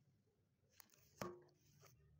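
Faint handling of a cardboard foundation box: a light click, then a sharper knock with a brief ring just past a second in, and another faint click near the end.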